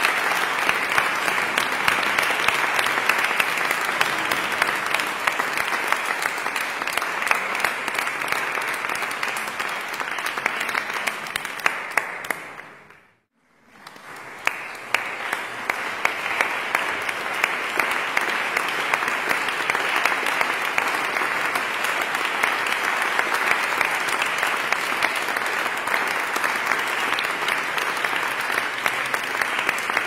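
Audience applauding: dense, steady hand-clapping. About halfway through it fades out to near silence for a second, then fades back in and carries on.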